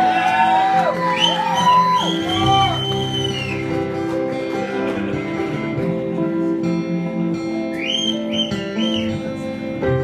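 Live acoustic guitar chords ringing in an instrumental passage near the end of a song, with a second guitar playing lead notes that bend up and down, mostly near the start and again near the end.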